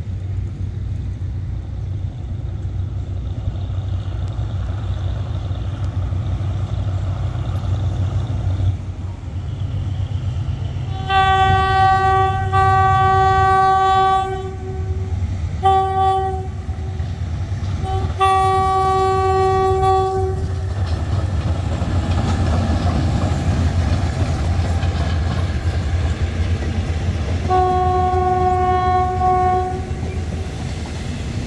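GE UM12C diesel-electric locomotive No. 4007 running with a steady low engine rumble as it pulls a train past, sounding its air horn: a long blast about eleven seconds in, a short blast, another long blast, and a fourth long blast near the end.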